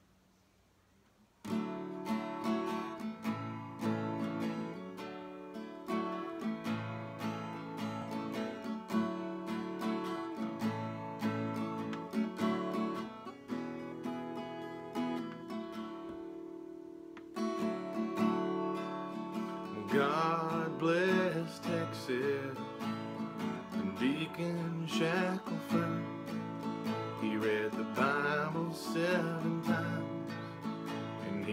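Acoustic guitar playing a country song's intro, starting about a second and a half in. A man's singing voice comes in over it about twenty seconds in.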